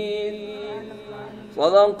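A male Qur'an reciter's voice in maqam nahawand. A held note fades away, and about a second and a half in he begins the next phrase with a rising, ornamented line.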